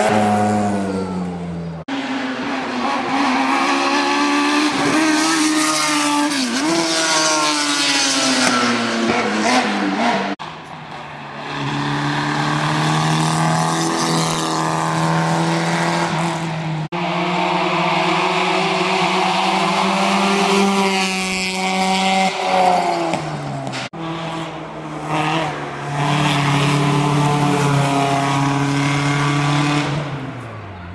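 Hillclimb race cars at full throttle, one after another, each engine revving up hard and dropping back as it shifts gear. The sound changes abruptly several times as one car's run gives way to the next.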